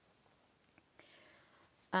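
Faint scratchy rustling with a couple of soft ticks, then a woman's voice starts an "um" near the end.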